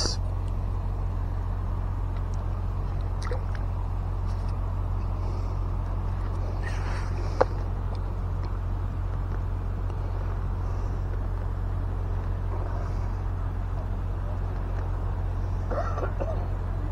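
Steady low rumble and hiss of outdoor background noise, with one sharp click about seven seconds in and a few faint handling ticks.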